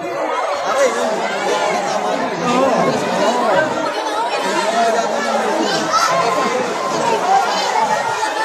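Dense street crowd chattering, many voices talking over one another.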